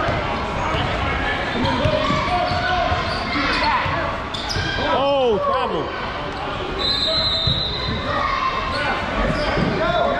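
Basketball game sounds in a large gym: a basketball bouncing on the court, sneakers squeaking on the floor, and players' and spectators' voices echoing in the hall. There is a burst of squeaks about halfway through.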